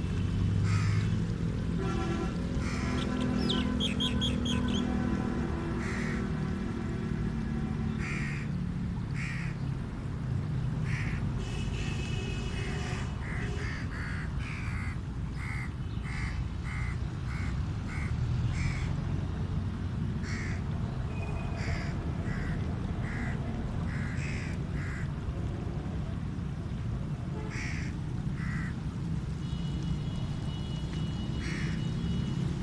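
Crows cawing again and again, in short harsh calls, over the steady low rush of flowing canal water.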